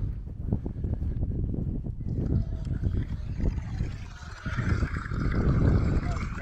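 Wind buffeting the microphone: a loud, uneven low rumble throughout, with a higher hiss joining it near the end.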